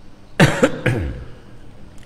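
A man coughing twice to clear his throat: two short bursts about half a second apart.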